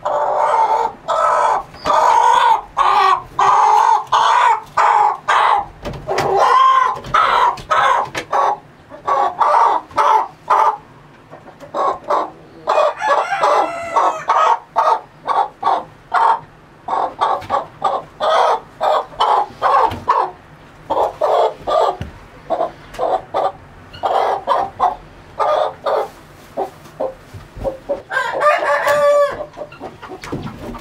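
Chicken calling loudly and over and over, short calls in quick succession with a few longer drawn-out calls about halfway through and near the end, as a hen is lifted out of a nest box and held.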